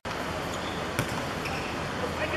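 A football struck once by a foot on a hard outdoor court: a single sharp knock about a second in, over steady background noise.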